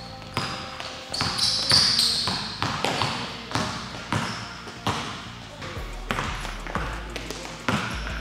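A basketball being dribbled on a hardwood gym floor, its bounces coming irregularly, with sneakers squeaking sharply on the court about one and a half to two seconds in.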